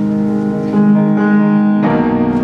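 Yamaha grand piano playing slow, sustained chords, with notes changing partway through and a new chord struck firmly near the end.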